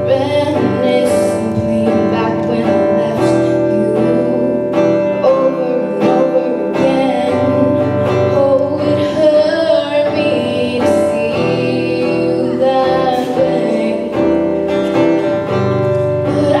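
A young female singer sings a melody into a microphone while strumming a steady rhythm on an acoustic guitar, performed live.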